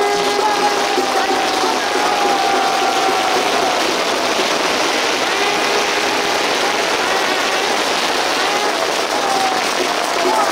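A firework fountain hissing steadily as it sprays sparks and smoke, with crowd voices and a few faint wavering tones over it.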